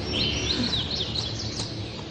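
Birds chirping: a run of quick high chirps in the first second, fainter ones after, over a low steady background.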